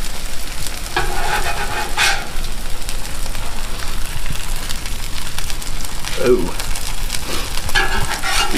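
Shredded cheese sizzling on a hot steel flat-top griddle, with a metal spatula scraping across the griddle as it slides under the sandwich and flips it.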